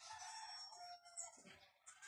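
A rooster crowing once, a faint call drawn out for nearly two seconds that falls in pitch near its end.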